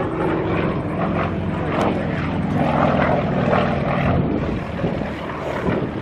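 Yak-52 aerobatic plane's nine-cylinder M-14P radial engine and propeller running as a steady drone during an aerobatic display, slightly fainter over the last two seconds.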